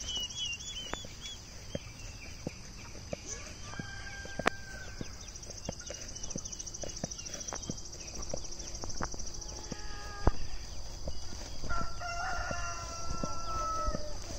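Chickens clucking near a coop, with a rooster giving one long crow near the end, over a steady high insect buzz.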